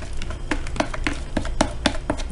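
A white plastic spoon taps and scrapes against a plastic tub as grated bar soap is knocked into a pan of hot orange-peel juice. The taps are sharp and come irregularly, about seven in two seconds, over a low steady hum.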